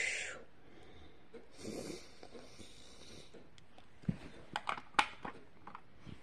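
Soft breathy exhales, then a few small clicks and taps of plastic toys being handled on a carpet about four to five seconds in.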